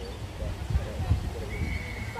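Distant shouts of children and spectators at a junior Australian rules football game over a low, uneven rumble of wind on the microphone. About one and a half seconds in, a single high steady note starts and holds.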